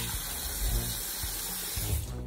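Water spraying steadily from a shower: an even hiss with no break.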